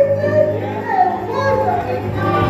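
A woman singing into a microphone with instrumental accompaniment.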